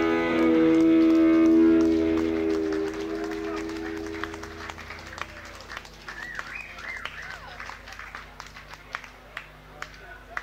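The band's last chord rings out and fades over the first few seconds. Scattered clapping and a few calls from a small audience follow.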